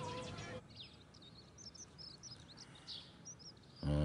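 Faint birds chirping in short, scattered high calls over a quiet background, after a held music note fades out about half a second in. Near the end a short, louder low pitched sound comes in.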